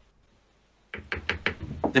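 Near silence, then about a second in a quick run of roughly eight sharp knocks or taps with a low thud, about seven a second.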